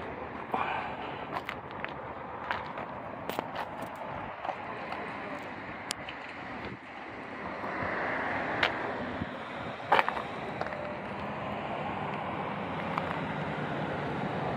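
Steady outdoor background noise with scattered light clicks and taps.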